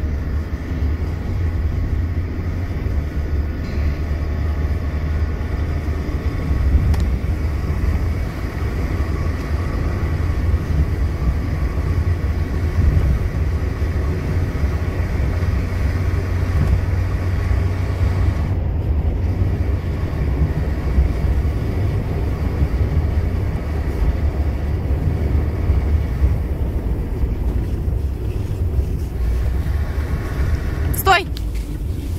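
Car driving fast on a packed-snow road: a steady, loud low rumble of engine and road noise, with faint whining tones above it that are clearest in the first half.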